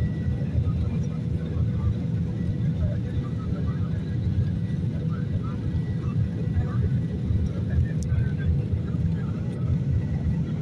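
Steady low rumble of an airliner's cabin noise in flight, with a faint steady whine above it.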